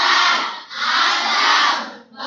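A class of schoolgirls chanting together in unison, a short phrase and then a longer one with a brief break between.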